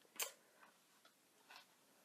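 Glossy magazine pages being handled: a few short, faint paper clicks and taps in a quiet room, the clearest just after the start.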